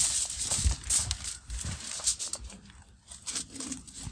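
Aluminium foil crinkling and rustling as a foil-wrapped diffuser plate is handled and lowered into a charcoal kettle grill, with small knocks as it is set in place. It is loudest for the first two seconds or so, then quieter.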